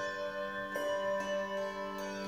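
Handbell choir ringing brass handbells: chords struck together and left to ring, with a fresh chord about three quarters of a second in.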